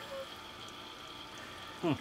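Small recirculating pump on an electric brewing system, running steadily with a thin high whine as it moves wort through a hose back into the mash.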